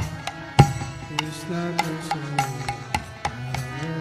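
Instrumental passage of a Bengali devotional kirtan song: hand drums beating a steady rhythm of a few strokes a second under a sliding melodic instrument line, with one heavy, deep drum stroke about half a second in.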